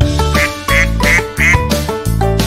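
Upbeat children's instrumental music with a cartoon duck quacking several times in quick succession, about three quacks a second in the middle.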